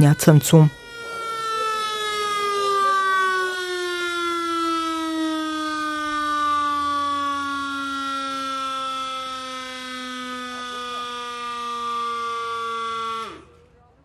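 Siren sounding one long tone that slowly falls in pitch for about twelve seconds, then cuts off suddenly: the alarm for a building evacuation drill.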